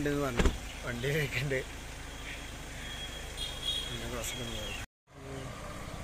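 A motor vehicle running close by: a steady low engine hum and road noise, with a single thump about half a second in. The sound drops out for a moment near the end.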